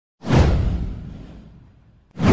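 Whoosh sound effect with a deep low boom underneath. It hits suddenly just after the start, sweeps down in pitch and fades out over about a second and a half.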